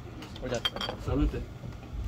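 Light clinking of dishes and cutlery, a few sharp clinks close together, with people talking around them.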